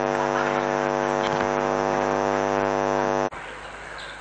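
Basketball arena's game horn sounding one long steady blast that cuts off suddenly about three seconds in. It is the test horn signalling the start of a period.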